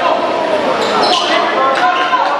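A basketball being dribbled on a hardwood gym floor, amid voices from players and crowd echoing in the hall, with a few short high squeaks about halfway through, typical of sneakers on the court.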